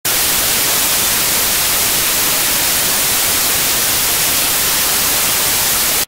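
Loud, steady white-noise static hiss with no tones or events in it, strongest in the treble, cutting off suddenly at the end.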